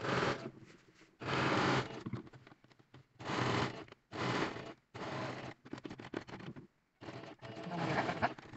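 Domestic electric sewing machine stitching a seam in short runs of under a second, stopping and starting several times as the fabric is guided, with a stretch of scattered ticks near the end.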